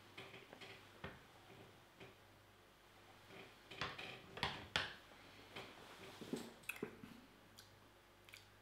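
Quiet sips and mouth sounds of two people tasting beer, with a few light clicks and knocks of beer glasses being set down on the table about four to five seconds in.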